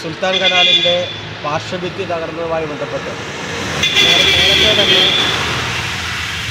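Road traffic passing close by, a vehicle engine running, with a horn sounding for about a second around four seconds in, under a man's speech.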